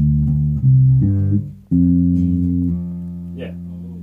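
Electric bass guitar playing a short riff: three quick plucked notes, then a longer low note that rings and slowly fades. It is the bass line being practised once more.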